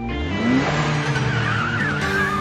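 MINI Coupe engine revving up with a rising pitch as the car accelerates hard, then a wavering tyre squeal in the second half, over background music.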